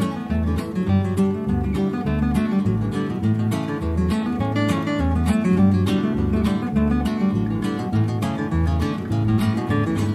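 Acoustic guitar strummed in a steady rhythm: the instrumental intro of a country song, just before the vocal comes in.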